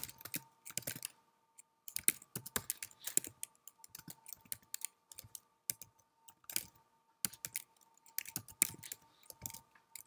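Computer keyboard typing: irregular runs of keystroke clicks with short pauses between words, over a faint steady hum.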